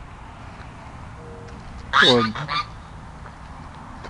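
Domestic geese honking over steady outdoor background noise, with a short faint call a little over a second in.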